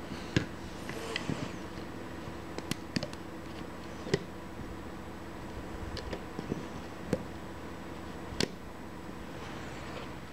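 A few scattered light clicks and taps from a plastic rubber-band loom and its hook being handled, over a steady low background hum.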